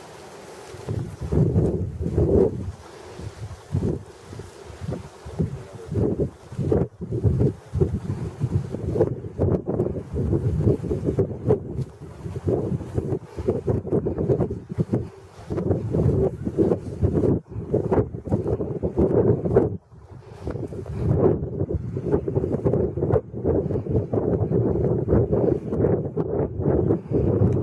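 Wind buffeting the microphone in irregular gusts, a loud rumbling rush that rises and falls.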